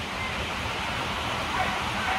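Steady outdoor background noise: an even hiss with a rumbling, unsteady low end from wind on the microphone.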